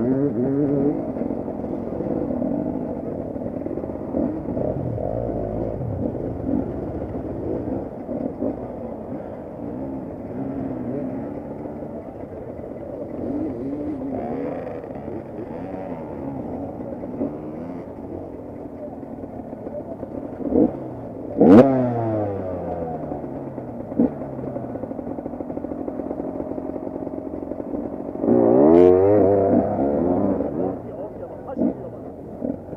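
Enduro dirt-bike engines idling and burbling at a start line, the nearest a KTM 250 EXC two-stroke, with throttle blips scattered through, a sharp rev about two-thirds of the way in and a burst of revs near the end.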